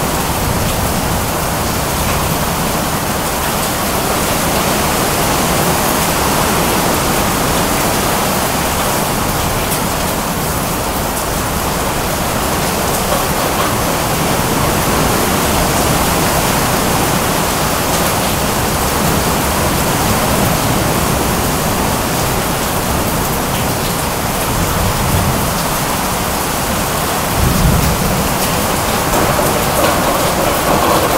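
Heavy rain pouring down steadily in a short, intense storm, with a brief low rumble near the end.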